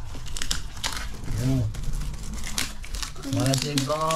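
Glossy gift wrapping paper crinkling and rustling in irregular crackles as a present is handled and unwrapped by hand.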